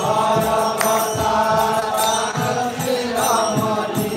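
Devotional kirtan: a voice singing a drawn-out chant, with hand cymbals (kartals) and low beats keeping time underneath.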